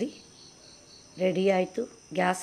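A woman's voice speaking briefly about a second in. Behind it is a faint, steady high-pitched whine.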